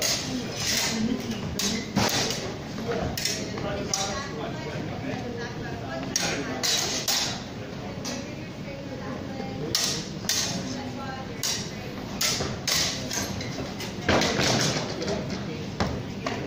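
Steel training longswords clashing and feet striking a wooden floor in a sparring exchange: irregular sharp clacks and knocks, thickest near the end, with voices talking in the background.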